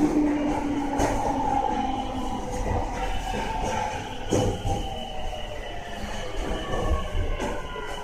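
Tokyo Rinkai Line 70-000 series EMU in motion: its unrenewed Mitsubishi GTO-VVVF inverter whines in several slowly gliding tones over the low rumble of wheels on rail. A single knock comes about four seconds in.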